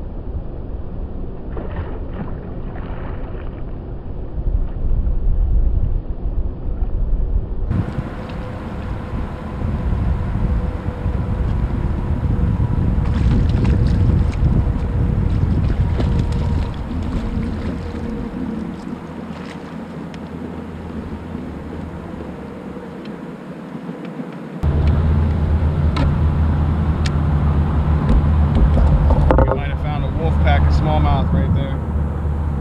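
Wind rushing over a microphone on a kayak, with water noise around the hull and scattered clicks and knocks from handling fishing gear. The sound changes abruptly twice, about a quarter of the way in and again near the end, and a faint steady hum runs through the middle.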